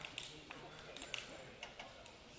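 Faint, indistinct voices murmuring in a large hall, with several light, sharp clicks and taps scattered through it.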